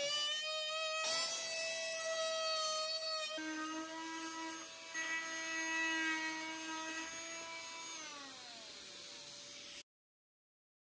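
Fein MultiMaster oscillating multi-tool plunge-cutting a notch into a plywood stair stringer: a steady, high buzzing whine, broken briefly twice. Near the end its pitch falls as the tool slows, and the sound cuts off just before the end.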